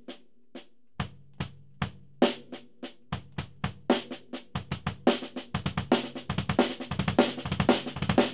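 Drum kit playing a six-note double bass drum lick, right hand, left, left on the snare, then three bass-drum strokes, over and over. It starts very slowly with single strokes and gradually speeds up until the strokes run close together.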